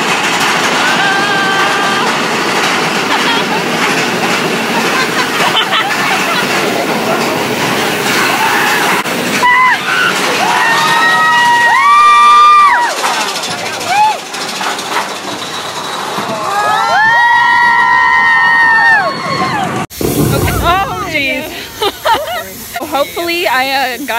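Riders on the Big Thunder Mountain Railroad mine-train roller coaster yelling in long, held cries over the steady rush and rattle of the moving train. There are two loud bursts of yelling, about ten and seventeen seconds in.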